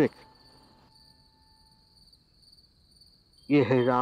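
Crickets chirping in a steady, faint, high pulsing trill. Brief speech cuts in at the very start and again near the end.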